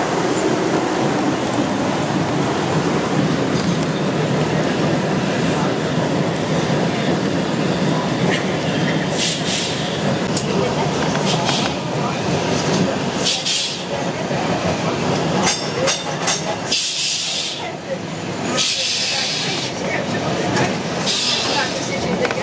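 Vintage English Electric tram car running along street rails, heard from the driver's platform: a steady rumble and rattle of the car on the track, with several short bursts of harsh high-pitched hiss from the wheels and running gear in the second half.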